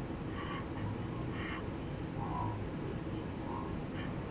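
Steady road and engine rumble inside a moving van's cabin, with a short chirping sound repeating about once a second.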